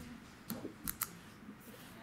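A few faint, sharp clicks, one about half a second in and two close together about a second in, from a thin plastic drinking cup being handled and set down.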